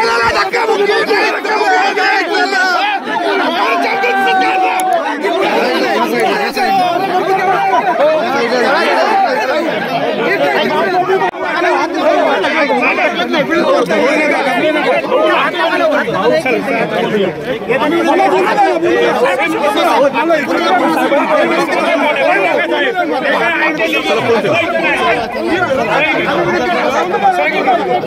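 A crowd of men arguing all at once at close range, many voices talking and shouting over one another in a steady, unbroken din.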